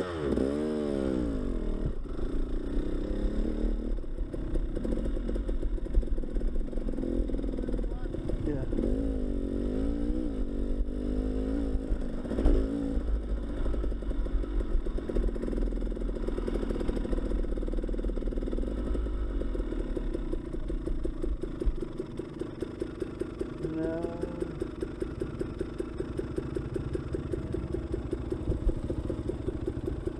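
Dirt bike engine pulling away from a stop with revs rising and falling through the gears, then running steadily at trail speed. Near the end the low rumble drops away and the engine settles to an even, slower beat as the bike slows to a stop.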